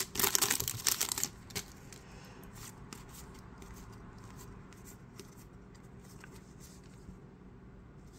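Crinkling of a foil trading-card pack wrapper in the first second or so. Then soft, irregular swishes and clicks of baseball cards sliding past one another as they are thumbed through by hand, dying down near the end.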